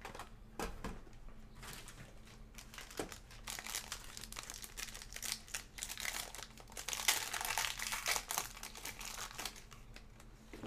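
Foil wrapper crinkling as hands unwrap a pack of trading cards, the crackling growing dense about halfway through and busiest near the end. A few light handling clicks come in the first three seconds.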